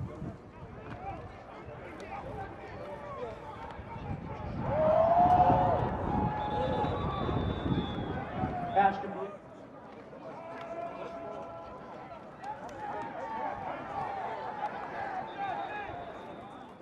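Football players and coaches shouting across a practice field, with one loud shout about five seconds in. The low background noise drops away suddenly about nine seconds in.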